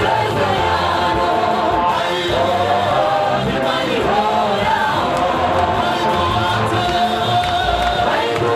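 A group of singers on microphones singing a gospel song together, amplified through a PA.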